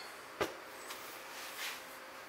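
A single sharp knock about half a second in, as a hand lets go of the wooden clamp-rack shelf, then faint room noise with a soft rustle.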